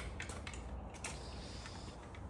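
Quiet shop room tone with a few faint clicks, no clear source in the foreground.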